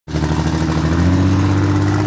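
A vehicle engine running loudly at a steady speed.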